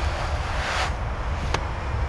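Wind rumbling on the microphone, with a brief hissing swell about half a second in and a single sharp click near the end.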